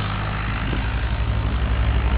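An engine running steadily with a low, even throb.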